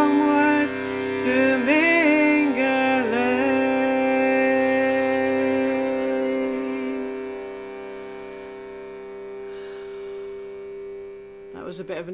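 A woman singing the last phrases of a slow folk song over a steady reed drone from a hand-pumped bellows instrument. Her voice holds the final note until about seven seconds in, and the drone then fades away.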